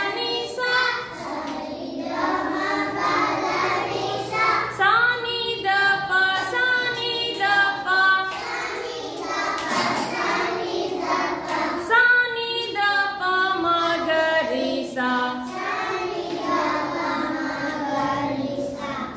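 A class of young children singing together in chorus.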